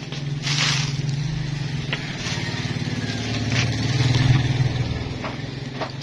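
A low, steady motor drone with a fast pulse, growing louder to a peak about four seconds in and then easing off, with a few light clicks and a short rustle of handling.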